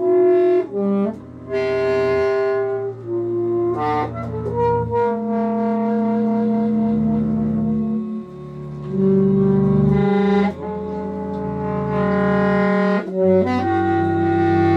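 Live improvised jazz: an alto saxophone holding long notes over slow bowed double bass, with a woman's voice singing sustained tones, the notes changing every second or two.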